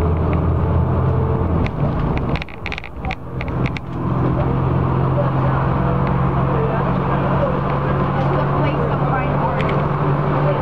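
Neoplan AN440 transit bus running at freeway speed, heard from inside the cabin: a steady engine and road drone. About two seconds in, the low hum changes pitch and briefly drops in level, with a quick series of clicks or rattles, before the drone settles again on a steady note.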